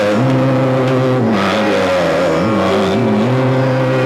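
Male Hindustani khayal voice singing Raga Multani, holding long notes with a quick wavering ornament about halfway through, over a steady drone.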